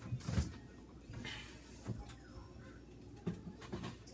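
Refrigerator door being opened and items being moved about inside the fridge: a few light knocks and rattles scattered through.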